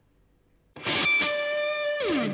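A short musical sting: a distorted electric guitar chord struck suddenly about three-quarters of a second in and left ringing.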